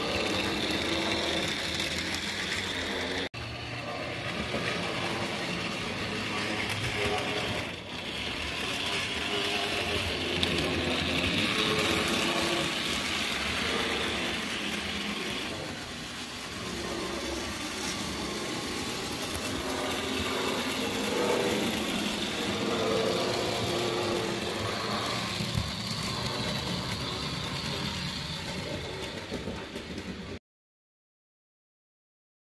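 Hornby AcHo HO-scale model trains running on the layout: a steady whirring of small electric motors with the rattle of wheels over the track. The sound drops out briefly twice in the first eight seconds.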